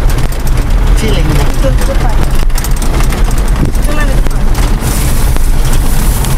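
A moving vehicle's engine and road noise, heard from inside the cab as a loud, steady low rumble, with a few brief bits of voice over it.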